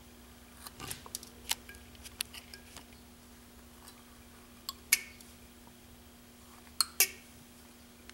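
Carving knife cutting into a wooden carving: a run of small clicks in the first few seconds, then two sharper pairs of snaps, one near the middle and one near the end, the last being the loudest. A steady low hum runs underneath.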